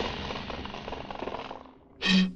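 Horror-film soundtrack effects: a dense, noisy crackling din that fades steadily away over about two seconds.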